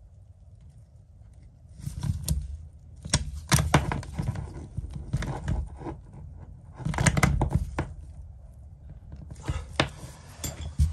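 Irregular clicks and knocks of a small tool and gloved hands tightening the terminal nuts on a voltage-sensing split charge relay and handling the relay and its cables, in clusters with quieter gaps between.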